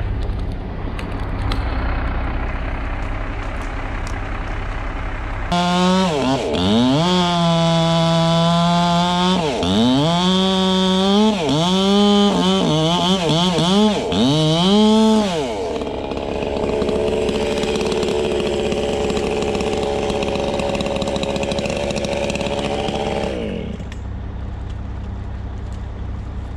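Chainsaw at full throttle, its pitch falling toward idle and climbing back up again and again as the throttle is let off and squeezed. Before and after it there is steadier machine running.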